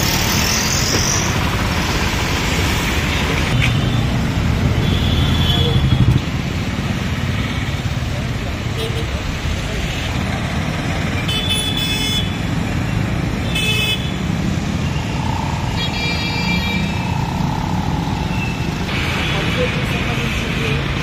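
Busy street traffic: the engines of cars, auto-rickshaws and motorcycles running, with three short horn toots in the second half, and voices among the noise.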